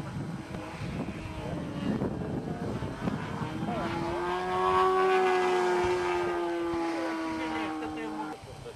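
Radio-controlled model airplane's engine heard in flight, building to loud about four seconds in with a steady whine whose pitch rises slightly and then sinks as the plane passes. Voices are heard faintly in the first half.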